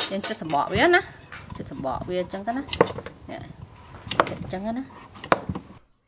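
Kitchen utensils and a kabocha squash half knocking and clattering on a wooden cutting board, several sharp knocks spread over a few seconds, mixed with short bits of a voice. The sound cuts off suddenly near the end.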